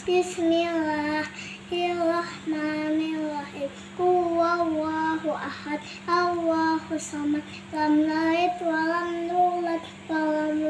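A young girl chanting Quran verses in a sing-song melody, with long held notes and short breaths between phrases, over a faint steady hum.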